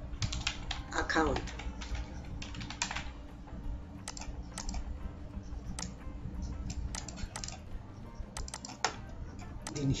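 Computer keyboard typing: irregular key clicks in short runs as a label's text is typed out.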